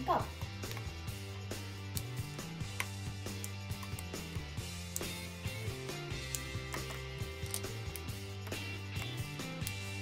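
Soft background music of slow held chords, with a few light clicks of crayon pieces dropped into paper cups of wax flakes.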